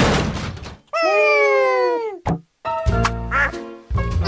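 Cartoon sound effects: a loud crash at the start that dies away, then a pitched tone sliding downward for about a second, a sharp click and a brief silence, and a loud low sound with music under it near the end.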